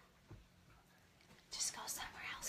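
Quiet room with a soft thump about a third of a second in, then a hushed, whispered voice near the end.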